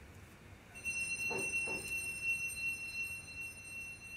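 Doorbell sounding one long, steady, high-pitched electronic tone that starts about a second in and fades away near the end.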